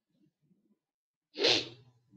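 A single sudden, loud, breathy burst from a person close to the microphone about one and a half seconds in, fading within half a second, with a brief low hum under it.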